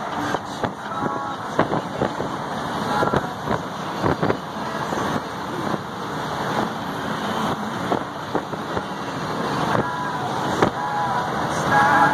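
Road and drivetrain noise inside a truck cab at freeway speed, a steady rumble and hiss broken by frequent short knocks and rattles from the cab.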